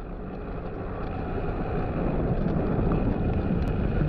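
Wind rushing over a bicycle-mounted camera's microphone, with road rumble from the moving bike, slowly growing louder. A few faint clicks come near the end.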